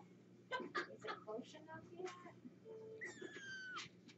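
A kitten mews once about three seconds in: a single long, high cry that falls slowly in pitch.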